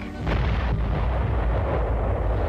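Explosion sound effect of a large TNT demolition blast: a sudden bang about a quarter second in, followed by a long low rumble that carries on.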